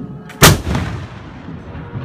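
A musket firing a blank salvo: one loud shot about half a second in, followed by a rumbling echo that fades over a second or so.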